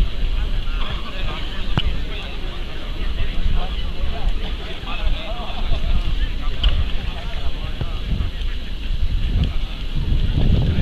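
Wind buffeting the camera microphone in a steady low rumble, under indistinct chatter of people standing close by, with one sharp click about two seconds in.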